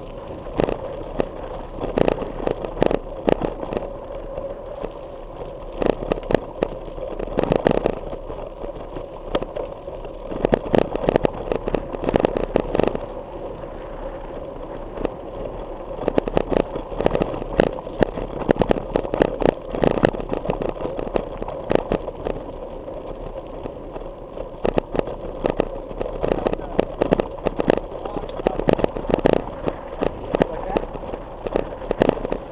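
Something loose rattling inside a bike-mounted GoPro Hero3 housing while riding a dirt trail: rapid clicking clatter that comes in bursts a few seconds apart, over steady trail and wind noise.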